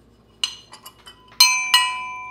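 A small copper-coloured metal cowbell rung twice in quick succession, the clapper striking and the bell ringing on after the second strike. A lighter metal clink comes about half a second in.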